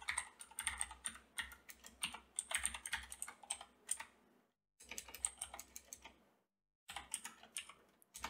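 Computer keyboard typing: quick runs of keystrokes in three bursts, broken by two brief pauses.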